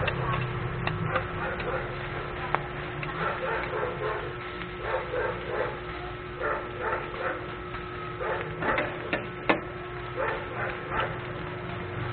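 Two steel spatulas scraping and turning pork sisig on a flat steel griddle, in quick repeated strokes of about three a second, with a couple of sharp clanks of metal on metal.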